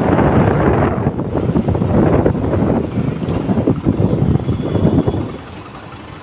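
Wind buffeting the microphone on a moving motorbike, over road and engine noise. The loud rush drops away about five seconds in.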